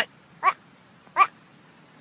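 Young Boer goat bleating twice, two short calls about three-quarters of a second apart, each sounding like a person saying "what?".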